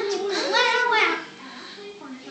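A child singing a short phrase that ends about a second in.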